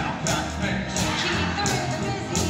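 Live stage musical number: the cast sings over band accompaniment with a steady beat, a sharp high stroke landing about every 0.7 s.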